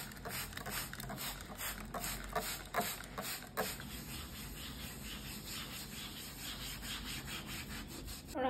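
A yellow kitchen sponge scrubbing dried white clay residue off a wooden tabletop in quick back-and-forth strokes, settling into an even rhythm of about three or four strokes a second.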